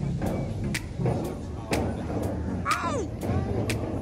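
Background music with a steady beat, about two beats a second, over busy outdoor ambience and indistinct voices. A short falling squeal comes about three seconds in.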